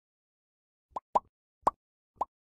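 Cartoon-style pop sound effects from an animated logo: three short pops starting about a second in, each with a quick upward slide in pitch, the second and third the loudest.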